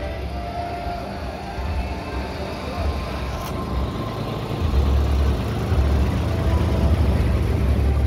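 Engine of a trackless tourist road train running as it drives past close by. A low rumble that grows louder about halfway through as the locomotive comes alongside.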